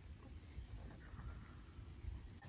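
Faint outdoor background: a low steady rumble with faint insect chirring.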